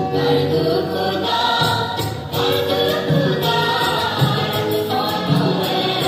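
Dance music with a group of voices singing together over a steady beat.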